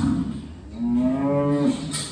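Sahiwal bull mooing: one call of about a second, starting a little under a second in.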